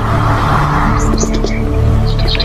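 Film soundtrack with sustained music, a rushing swell of noise that rises and fades in the first second, and a few light clicks after it.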